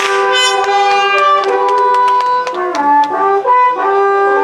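Several long wooden shepherd's horns played together, holding long notes in harmony that shift to new pitches a few times, most around the last second and a half.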